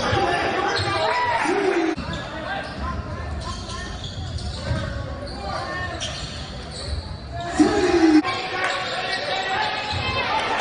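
Basketball game in an echoing gym: a ball bouncing on the hardwood court under players' and onlookers' voices, with a loud shout about eight seconds in.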